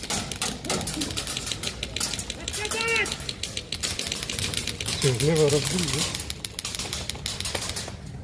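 Airsoft rifles firing: rapid, irregular strings of sharp clicks from several guns at once, which stop just before the end. Shouted voices break in twice.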